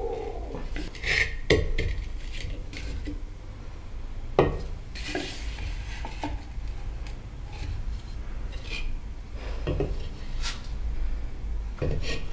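Unfired clay plates and bowls knocking and scraping as they are set down and stacked on a kiln shelf: scattered light clinks and rubs, the sharpest knock about four seconds in.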